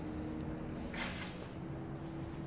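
Faint steady background hum and hiss, with a brief rush of hiss about a second in.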